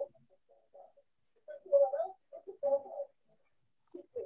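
A dove cooing: short low calls, with two louder phrases around the middle.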